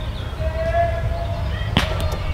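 A steady low wind rumble on an outdoor microphone, with a faint held tone through the middle. About three-quarters of the way in comes one sharp smack, the roundnet ball being struck by hand on a serve.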